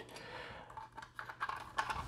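Faint clicks and light rattles of a plastic toy truck trailer being handled and turned over in the hands. Several small clicks come mostly in the second half.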